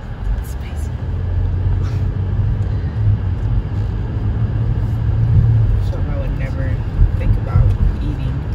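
Road noise inside a moving car's cabin: a steady low engine and tyre rumble that grows a little louder partway through as the car drives along a city street.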